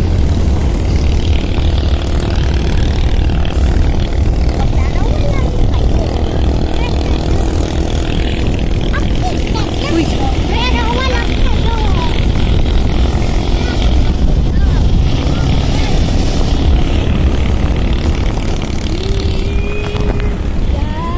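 A vehicle driving along a road: a steady, loud, low rumble of engine and road noise that runs throughout.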